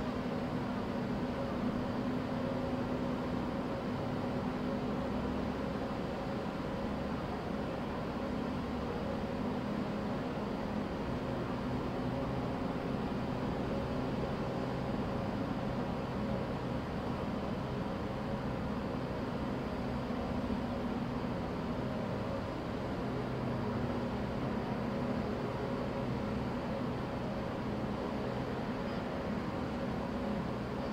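Steady machinery hum with a low rumble and a few held tones, unchanging throughout.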